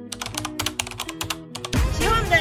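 A quick run of keyboard-typing clicks, about a dozen a second, over soft background music: a typing sound effect. Near the end, louder music with a voice cuts in.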